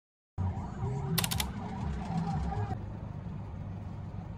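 Car and traffic noise heard from inside a car: a steady low rumble, with a quick run of clicks about a second in.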